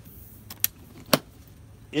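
A hand handling a hard polypropylene cooler, making three small clicks, the last and loudest a little over a second in.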